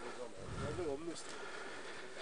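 Faint, off-microphone voices talking quietly in a large hall, over a low, even room background.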